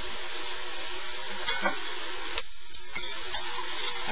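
Browned ground chuck sizzling steadily in a stainless steel skillet, with a few light clicks against the pan.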